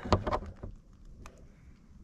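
A few light clicks and taps in the first second, with one more faint tick just past the middle, over faint background noise: handling noise of hands at the boat's open hull.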